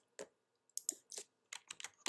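Keystrokes on a computer keyboard: a single tap, then two short irregular runs of taps.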